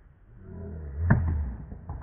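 A soft tennis racket strikes the soft rubber ball once, about a second in, with a sharp pop. A low rush swells and fades around the hit.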